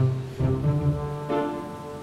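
Background music: a few low, held bowed-string notes, one after another.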